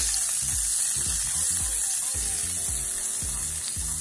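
Butter melting and sizzling in hot oil in a skillet: a steady hiss. Background music with a low beat runs underneath.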